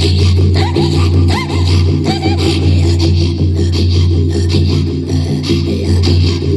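A woman's northern (Yukaghir) throat singing, sung into a frame drum held close to her mouth. A low, steady drone with a pulsing rhythm runs under it, and a few short rising-and-falling high calls come in the first half.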